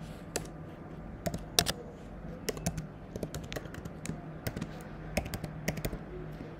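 Typing on a computer keyboard: irregular runs of key clicks as a password is entered, with the loudest keystrokes about a second and a half in. A steady low hum runs underneath.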